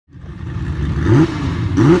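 Car engine revved in quick repeated blips, each a short upward sweep in pitch, about one every 0.7 seconds, over a steady low rumble that fades in at the start.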